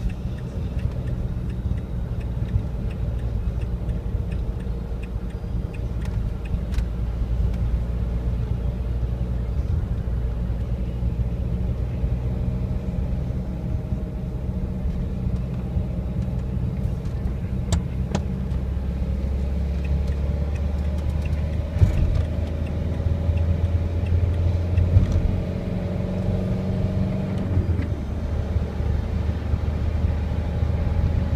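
Car cabin noise while driving on a motorway: a steady low rumble of engine and road, with the engine note growing stronger and rising a little in the second half. A few short knocks come around two-thirds of the way through.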